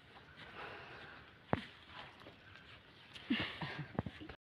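Quiet outdoor background with one sharp click about a second and a half in, and a few short, faint voice-like calls near the end.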